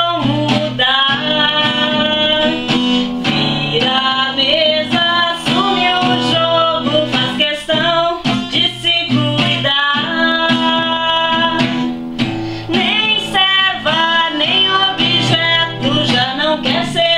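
Acoustic guitar strummed in a steady rhythm, with a woman singing along.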